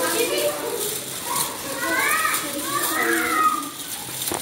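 Children's voices chattering and calling out, with two high calls that rise and fall about two and three seconds in.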